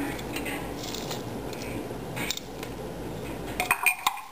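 Light clinks and knocks of a food chopper container against a glass salad bowl as crumbled nuts are tipped out onto the salad, with a few sharper clicks near the end.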